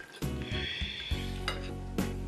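Knife and fork scraping on a dinner plate, with a couple of light clinks in the second half, over background music.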